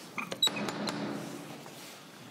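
Metal ring knocker on a wooden door being knocked: a few sharp metallic clinks with a short ring in the first second, the loudest about half a second in.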